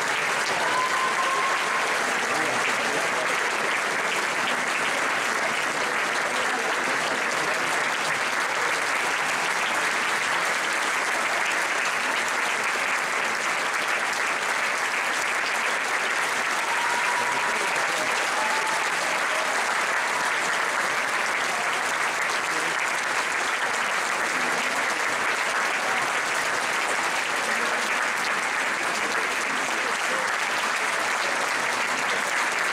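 Theatre audience applauding steadily, a dense even clapping, with a few brief calls rising above it.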